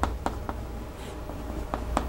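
Chalk writing on a chalkboard: a string of short, irregular taps and light scrapes as the strokes of Chinese characters are drawn.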